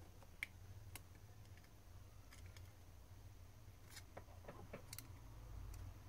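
Faint small clicks and scrapes of a metal pry tool working around a smartphone's motherboard as it is levered out of its snap clips, with a sharper tick about half a second in and a cluster of clicks around four to five seconds in.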